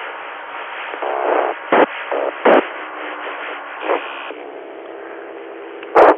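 FM satellite downlink audio from an amateur radio receiver: steady static hiss, with a few short pops and weak, garbled signals and brief tones breaking through in the middle, before a strong station comes in at the very end.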